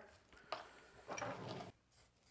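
Faint handling sounds of a small plastic insulating end being worked onto a battery wire: a light click about half a second in, then a soft scraping rustle.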